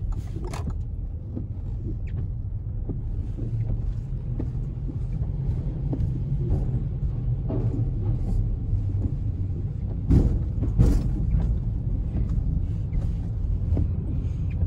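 Low, steady rumble of a car heard from inside its cabin as it creeps forward, with scattered light clicks and knocks. Two heavy thumps come about ten and eleven seconds in, as the wheels roll over the ferry's loading ramp.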